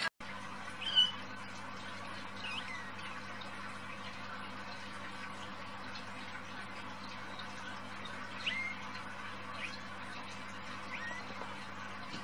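Young kittens giving a few short, high squeaks now and then as they play-bite each other, over a steady low hum.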